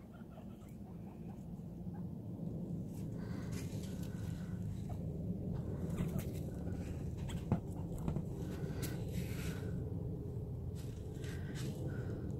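Guinea pigs moving about their cage, with a steady low rustling and scattered short high sounds and clicks from about three seconds in.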